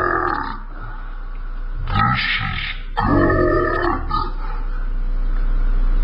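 A voice making wordless vocal sounds in three bursts: one at the start, one about two seconds in and one from about three to four seconds in. A steady low hum runs underneath.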